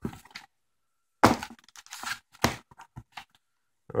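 Cardboard packaging and a plastic bag being handled: a string of short, sharp crinkles and crackles.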